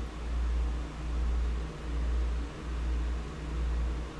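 Low background rumble that swells and fades a little more than once a second, with a faint hiss over it.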